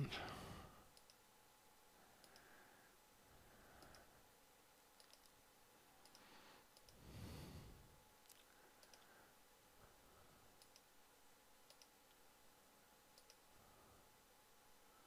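Near silence with scattered faint computer mouse clicks, from clicking to add small areas to a selection. A short soft breath comes about seven seconds in.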